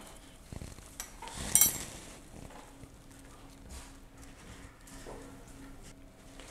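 Light taps and clicks of a fork pricking puff pastry in a dish, with one louder metallic clink against the dish about a second and a half in.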